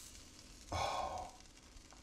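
A person's short breathy sigh, a little under a second in, over a faint background.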